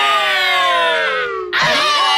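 A cartoon character's long scream, falling steadily in pitch, breaks off about a second and a half in, and a new wavering yell starts right after.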